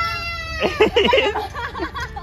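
High-pitched excited human squeals: one long held squeal at the start, then a burst of rapid, wavering shrieks about half a second in, trailing off into shorter cries.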